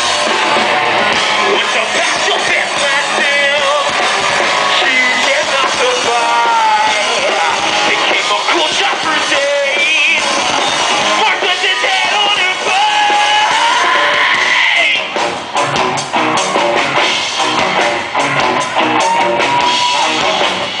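Live rock band playing loud, with electric guitars, a drum kit and a singer's voice over them. About fifteen seconds in the playing turns choppier and briefly dips in level.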